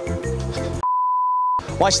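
An edited-in censor bleep: one steady high beep about three-quarters of a second long, with all other sound cut out while it plays, masking a spoken word. Background music with a repeating bass beat runs around it.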